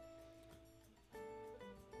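Quiet background music of plucked guitar: held notes ring out and fade, then a new chord starts about a second in.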